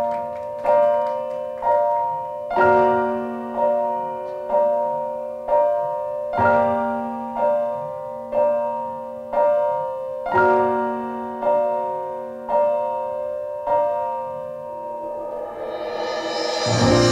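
Piano playing slow, repeated chords, struck about once a second, each ringing out and fading before the next. Near the end a rising swell of hiss comes in over it.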